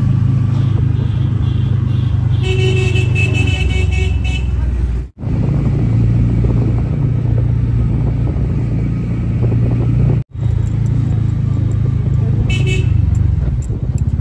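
Street traffic heard from a moving motorbike, with a loud steady low rumble. A vehicle horn honks for about a second and a half starting two and a half seconds in, and again briefly near the end. The sound cuts out for a moment twice.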